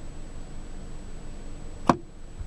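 Plastic vanity-mirror cover on a car sun visor snapped shut, one sharp click near the end, over a low steady cabin background.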